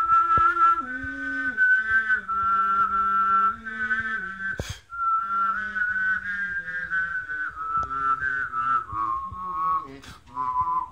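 A person whistling a slow melody with vibrato while voicing a low sustained tone at the same time, the lower note shifting in steps under the tune. Both break off briefly about halfway through, with a sharp click, then resume.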